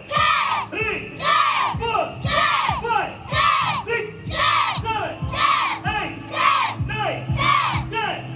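A group of children shouting together in unison about once a second, about eight sharp shouts in all, in time with synchronized karate moves.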